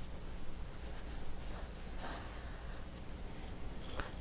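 Faint rustling of yarn and crocheted acrylic fabric as a yarn tail is drawn through the stitches of a stuffed amigurumi head, with a few soft brushing sounds.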